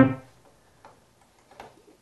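The last notes of a fast synthesizer bass arpeggio from FL Studio's arpeggiator, a rapid repeating note pattern, stopping at once and dying away within a fraction of a second. After that, near quiet with two faint clicks.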